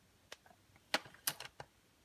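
A plastic DVD case being handled: a few light, sharp clicks and taps as it is turned over in the hands, just before it is opened.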